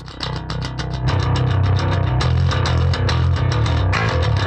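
Soloed electric bass track playing a fast picked metal line, each note's pick attack clearly audible over a heavy low end; it gets louder about a second in.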